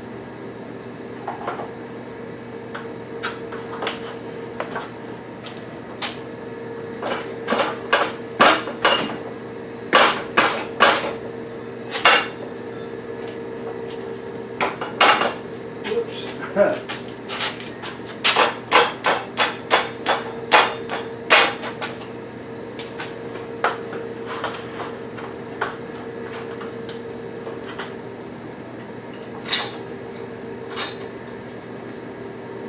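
Steel gantry crane parts and joint pins knocking and clinking together as they are fitted by hand: scattered sharp metal taps, coming thick and fast through the middle stretch, then a couple more near the end.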